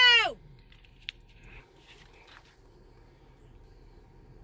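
The tail of a shouted "go!", then quiet car-cabin background with a single short click about a second in.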